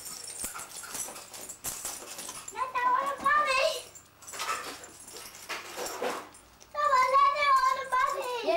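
Two high-pitched, wavering wordless cries, one a few seconds in and another near the end, with light clicking and rustling of coins and paper being handled before them.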